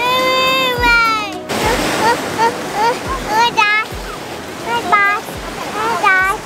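Toddler crying: one long wail, then a run of short sobbing cries, over the wash of surf on the beach. He is upset by the waves and the sand on his toes.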